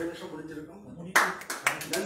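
An audience starting to applaud about a second in: hand claps that thicken from scattered strokes into steady clapping, after a man's voice.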